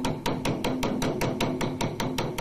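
Large Chinese bass drum (dagu) struck with two sticks in a fast, even stream of sharp strokes, about seven a second.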